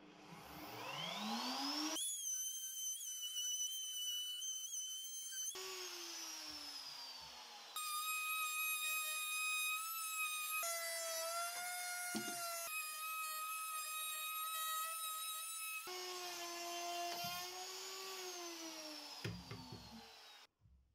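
Handheld electric router running while it profiles the curved edge of a wooden tabletop: a steady motor whine that rises as it spins up at the start, changes pitch abruptly several times, and winds down near the end.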